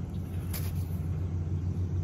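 A steady low rumble in the background.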